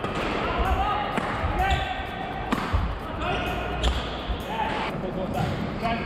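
Badminton footwork on a sports hall court: court shoes squeaking in short irregular chirps and feet thudding on the floor, with the occasional sharp racket hit on a shuttle.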